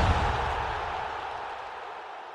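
The fading tail of a deep boom-and-whoosh impact sound effect from an end-card logo sting. A noisy rush dies away steadily.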